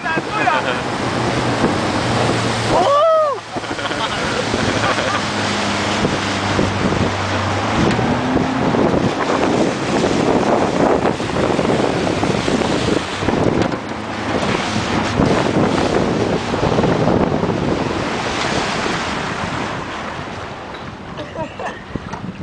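Wind buffeting the microphone and water rushing past a moving motorboat, with the boat engine's steady hum underneath for the first several seconds. A brief shout comes about three seconds in.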